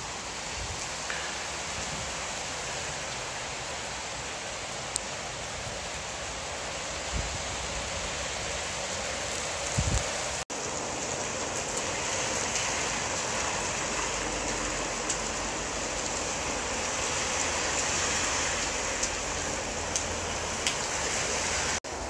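Heavy rain pouring down in a steady hiss, broken by a brief cut about halfway through, a little louder after it.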